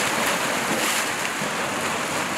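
Sea waves washing on a shore: a steady, even surf hiss.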